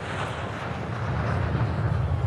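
Jet airliner climbing after takeoff: a low, steady engine rumble that grows louder about a second in.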